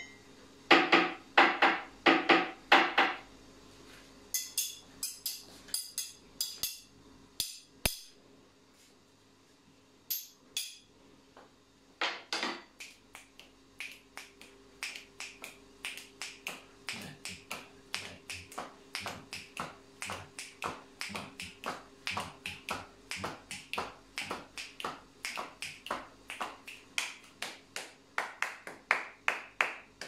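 A quick run of sharp clinks and knocks at a cup in the first three seconds. Then, after a quieter stretch, a long run of even hand claps at about three a second, growing brighter near the end.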